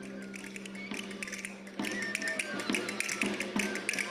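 Castanets clicking in a quick rhythm over Spanish folk dance music. The music and clicking come in louder about two seconds in, after a steady held tone.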